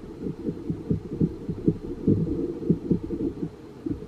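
Pen writing a word on a notebook page, heard as a run of dull, irregular low knocks and rubs, as if carried through the notebook and table rather than as a scratch.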